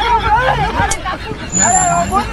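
Several men's voices talking and exclaiming over one another, with a low rumble underneath and a brief high tone near the end.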